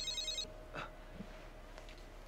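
Mobile phone ringtone: a fast, high electronic trill of an incoming call, which stops about half a second in.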